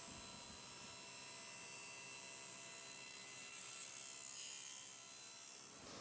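Table saw running, a faint steady motor drone with a slight swell about three and a half seconds in.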